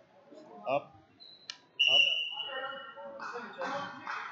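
A referee's whistle blown once, a steady shrill tone lasting about a second and starting a little under two seconds in, stopping the wrestling action.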